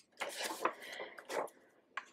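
Paper rustling as a disc-bound planner page is lifted and turned over, a few rustles in the first second and a half, then quiet and a brief click at the very end.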